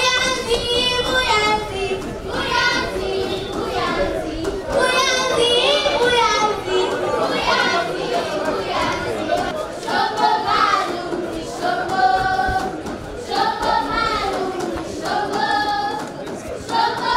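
A group of children's voices singing a Luhya folk dance song in short repeated phrases, each about a second long with brief gaps between them.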